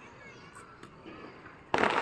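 Firecracker going off with a sudden loud bang near the end, after a quiet stretch with a few faint distant pops.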